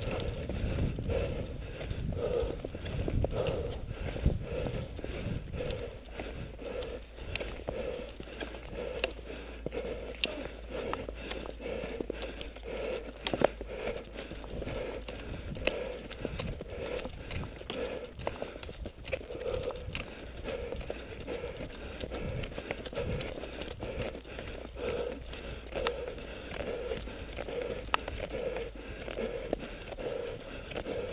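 Cross-country skis and poles working on a snowy trail in a steady, rhythmic stride, with a regular beat of swishes and pole clicks. Wind buffets the microphone for the first few seconds.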